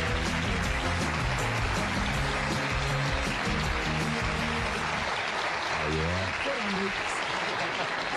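Studio band playing walk-on music over steady audience applause, with voices breaking in about six seconds in.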